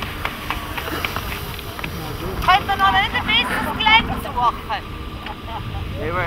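People's voices calling out in high, wavering tones from about two and a half seconds in until about five seconds, over a steady low rumble.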